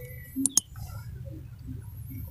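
A couple of sharp metal clicks about half a second in, then faint scraping and handling noises as a loosened spark plug is turned out of a motorcycle's cylinder head by a gloved hand.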